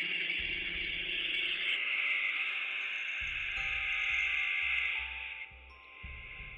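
Harsh, steady electronic noise with faint droning tones and low pulsing underneath, the sound design of an analog-horror phone hotline recording just after its message glitches and loops. It drops away abruptly about five and a half seconds in.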